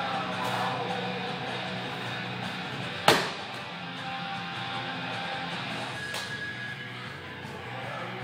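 Background rock music with guitar. About three seconds in there is a single loud thud: a medicine ball dropped onto the gym floor as the athlete breaks from his wall-ball set.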